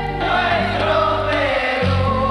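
Women's choir singing a devotional Peruvian hymn over instrumental accompaniment with steady bass notes. The voices sing a phrase that falls in pitch.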